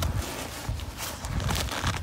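Nylon backpack fabric rustling and rubbing as the shoulder-harness of an Osprey Talon 44 is slid along its back panel to adjust the torso length, with a few low handling knocks.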